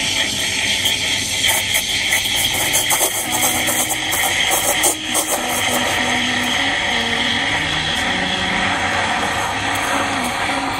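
Planit espresso machine's steam wand hissing steadily as it steams milk in a stainless steel pitcher. Soft background music with a low melody joins from about three seconds in.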